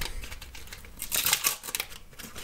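Panini sticker packet's paper wrapper being torn open and crinkled by hand: a run of short crackles and rips, thicker in the second half.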